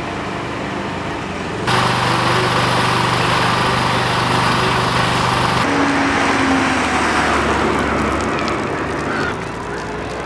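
Road traffic and engine noise. A steady engine hum under a loud hiss starts abruptly about two seconds in, then changes abruptly around the middle to the sound of a car passing, which grows quieter near the end.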